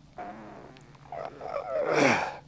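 A man grunting and groaning with effort while bending a length of 3/8-inch rebar by hand, the loudest groan near the end falling in pitch.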